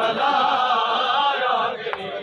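Men's voices chanting a Punjabi noha (mourning lament) together, the line breaking off near the end, over the uneven thuds of a crowd beating their chests in matam.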